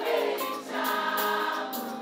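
Live gospel worship music: many voices singing held notes together, choir-like, over a band.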